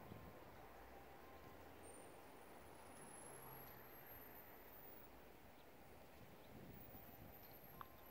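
Near silence: faint outdoor background with a weak low hum.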